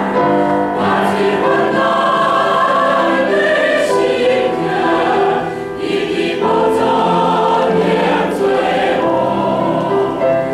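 Mixed church choir of women and men singing a hymn anthem in sustained, held chords; the singing briefly eases a little past halfway.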